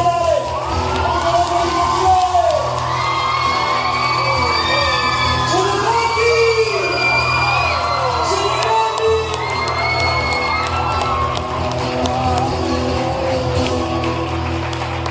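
Live music with a sustained backing, and a crowd whooping and cheering over it.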